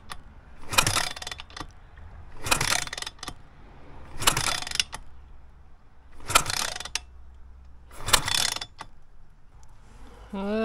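Pit bike's Moretti 170 engine being turned over on the kickstart, five ratcheting strokes a little under two seconds apart, without firing. The spark plug is out and held against the engine in a spark test, and the spark is weak or missing, suspected to be a faulty ignition module.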